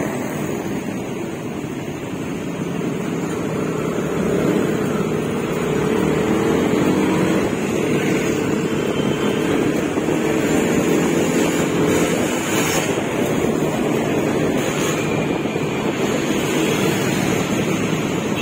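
Engine drone and road noise heard from a moving vehicle in traffic, with wind on the microphone. The engine's pitch rises slowly a few seconds in as it speeds up.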